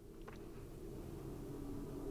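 Faint steady low hum of room noise, with one faint short click about a quarter second in.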